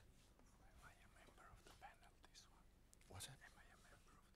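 Near silence with faint, distant murmured voices off-microphone, a few light clicks, and a brief faint noise about three seconds in.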